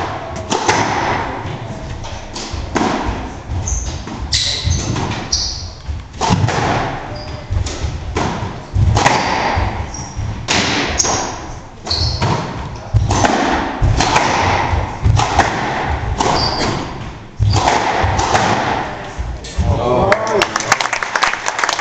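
Squash rally: the ball is struck by rackets and hits the court walls in sharp thuds, about one a second, with short high squeaks of court shoes on the wooden floor between the hits.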